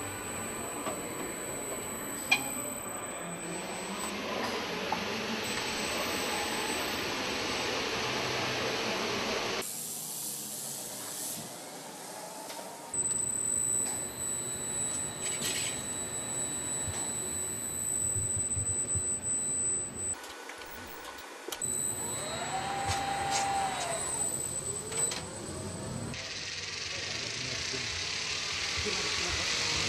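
Automated warehouse conveyor machinery running as it carries bicycles on overhead hooks: steady mechanical hum and hiss with a sharp click early on, changing abruptly at several edits. Near the end a motor whine rises, holds briefly and falls away.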